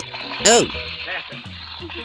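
A steady stream of milk squirting from a rubber-glove udder into a pail as the glove's fingers are pulled.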